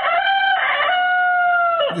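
A rooster crowing: one long crow that drops in pitch as it ends, sounded as a wake-up call.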